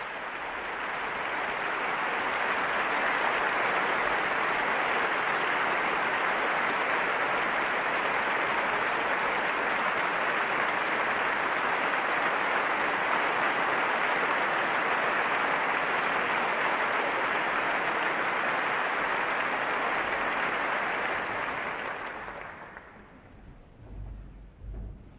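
A large concert audience applauding steadily, greeting the soloist and orchestra before the piece. The applause swells in over the first couple of seconds and dies away near the end.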